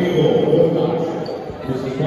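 People's voices echoing in a school gymnasium, with a few dull thumps.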